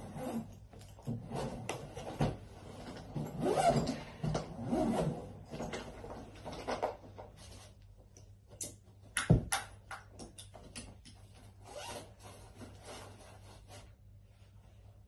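Zip of a hand-luggage suitcase being pulled open in several short rasps, with handling and rubbing as the case is moved and packed. A single sharp knock about nine seconds in.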